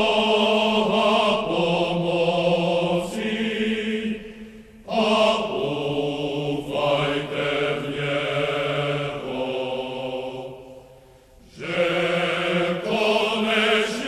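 Slow chanted vocal music: long held notes sung in phrases, with short pauses about five and eleven seconds in.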